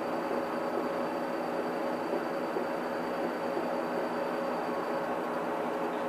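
Steady room noise: an even hum and hiss with a faint high tone running through it, and no distinct events.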